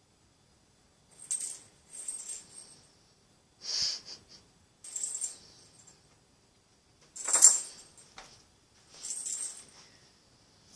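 A small bell jingling in six short bursts as a cat grapples and bunny-kicks its toy, the loudest burst about seven seconds in.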